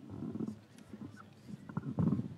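Faint, indistinct voices in a lull, rising a little louder near the end.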